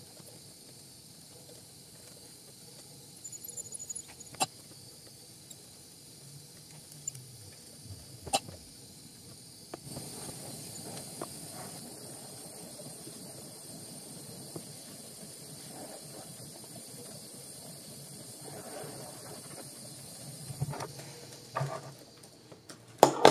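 Small brass gas torch burning with a steady hiss as a small piece of glass is heated in its flame; the hiss grows louder and fuller about ten seconds in. A few light clicks sound in the first half.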